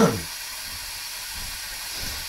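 Tap water running in a steady hiss, left running until it comes warm.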